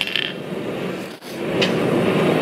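Steady rushing roar of a gas forge burner running, dipping briefly just after a second in and then building again.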